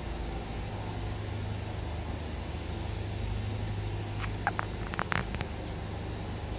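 A steady low hum runs throughout, with a few sharp clicks clustered about four to five seconds in.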